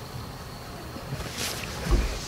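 Steady background noise with a short sniff about one and a half seconds in, from a girl starting to cry into her hands, and a low thump just at the end.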